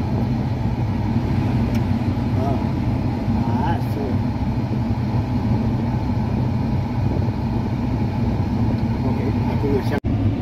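Combine harvester's engine running steadily, a continuous low drone heard from inside the cab.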